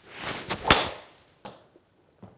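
Golf driver swung hard with a rising swoosh through the air, then a sharp crack as the clubface strikes the ball about three-quarters of a second in, at 106 mph club speed. A faint knock follows about a second and a half in.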